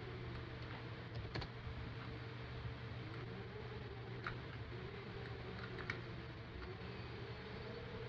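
A steady low electrical hum with a handful of light, scattered clicks from a computer mouse or keyboard being used.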